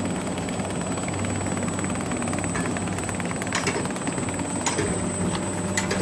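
Mountain coaster cart rolling slowly along its rail track: a steady mechanical hum with fine rapid clicking, and a few sharper clacks in the second half.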